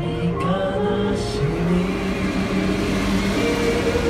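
A small group singing a hymn while a bus passes close by; its engine and tyre noise swells through the middle and fades near the end, partly covering the singing.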